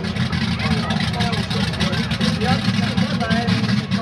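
Mud-bog pickup truck's engine running low and steady, with no revving, under the background talk of a crowd.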